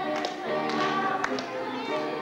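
A children's glee club singing a gospel song, with several sharp hand claps along with it.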